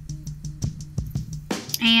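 Background music with a steady beat; a woman starts speaking near the end.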